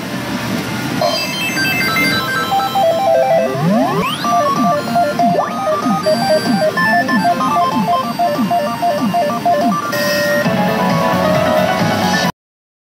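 Umi Monogatari 3R2 pachinko machine playing its electronic reel-spin music: a quick beeping melody over repeated sliding pitch sweeps. About ten seconds in it switches to a new fanfare as a jackpot round begins.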